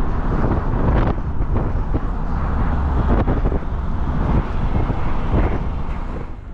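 Road noise and engine rumble of a moving car, with wind buffeting the microphone in a steady low rumble.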